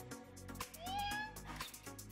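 Background music with a steady beat, over which a cat meows once, a short call rising in pitch about half a second in.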